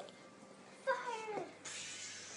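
A puppy gives one short whine that falls in pitch, about a second in, followed by a brief breathy hiss near the end.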